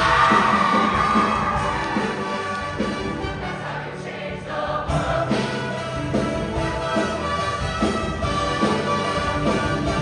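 Show choir singing with instrumental accompaniment, amplified through the hall's sound system.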